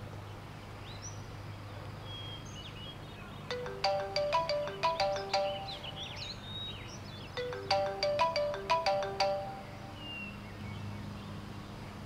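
Mobile phone ringtone: a short electronic melody of quick stepped notes, played through twice about four seconds apart.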